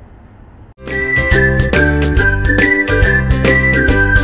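Upbeat closing theme jingle of a children's show, starting about a second in: a steady beat over a bass line with bright melodic tones. Before it, a brief quiet moment of room tone.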